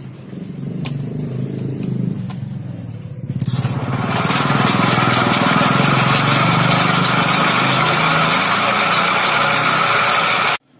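Areca nut peeling machine running with its lid shut: a steady motor hum, joined about three and a half seconds in by a much louder, steady rushing clatter of the nuts being churned and scoured inside the spinning drum.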